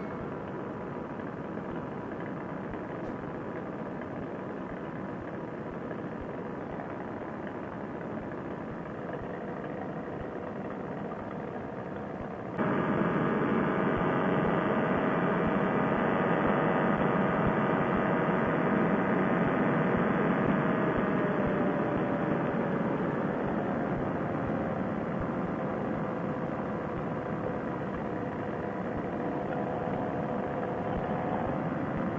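Paramotor engine and propeller droning steadily in flight. About twelve seconds in it suddenly becomes louder and fuller, and about two-thirds of the way through its tone dips slightly in pitch.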